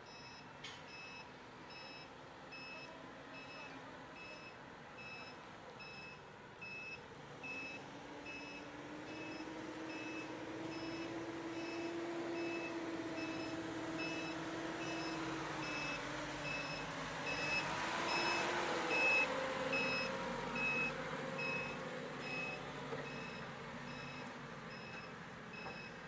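A work vehicle's backup alarm beeping steadily, a bit more than once a second, over the engine of a forklift that grows louder as it drives close, loudest about two thirds of the way through, then eases off.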